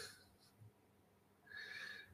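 Near silence broken by a man's soft breaths, one fading out at the start and another about one and a half seconds in.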